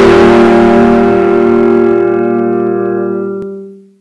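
Intro music ending on a long held chord that fades out to silence near the end.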